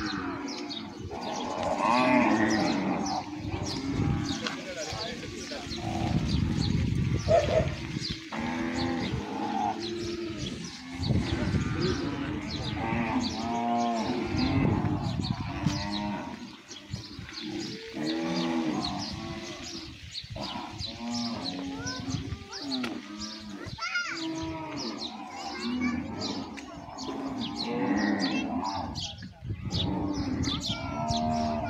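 A herd of zebu cattle mooing, many calls overlapping one another with hardly a break.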